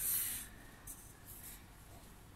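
Pencil lead scratching across paper as straight lines are drawn along a ruler, in a few short strokes, the first the longest.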